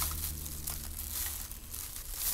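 Irregular rustling and crinkling as things are handled, over a low steady hum that weakens about halfway through.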